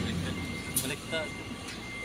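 Faint intermittent beeping of a tractor-trailer's reversing alarm as the truck manoeuvres, over the low rumble of its engine and faint voices.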